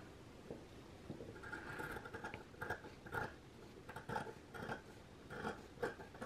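Scissors cutting through a sewn fabric seam allowance, trimming it down to reduce bulk: a series of short, quiet snips beginning about a second and a half in.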